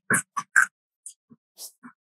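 Scissors snipping through folded construction paper in a quick series of short cuts, louder in the first half and fainter after.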